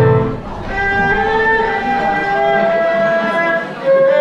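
Live instrumental music from an erhu, a flute and an electronic keyboard: a melody in held, sliding notes over keyboard accompaniment.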